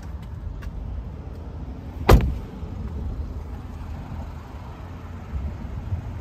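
A car door being shut: one sharp thump about two seconds in. Around it are a few small clicks and a steady low rumble of handling and outdoor noise as the person climbs out and walks away from the car.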